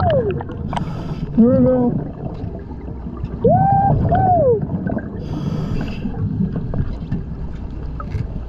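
Scuba diver breathing through a regulator underwater: two hissing inhalations, with bubbling and rumbling between them. Several rising-and-falling whistling tones, mostly in pairs, sound through it.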